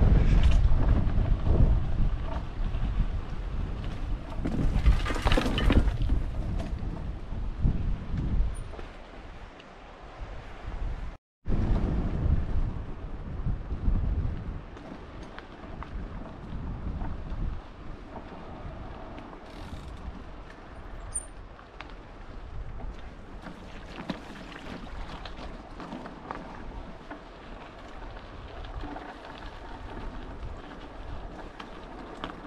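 Wind buffeting the microphone of a camera riding along a rough gravel track, a steady rumbling noise with no clear engine note. It cuts out for a moment about eleven seconds in and comes back quieter.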